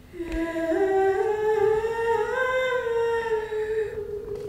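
A woman humming a slow tune in long held notes, starting just after a brief pause, stepping up in pitch over the first two and a half seconds and then easing slightly down.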